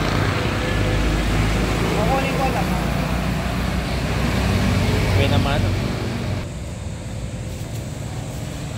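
Road traffic running past with a low engine rumble and people talking in the background; the rumble drops off suddenly about six and a half seconds in.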